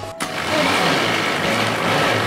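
Countertop blender running steadily, its motor whirring as it blends a liquid batter; it starts about a quarter second in.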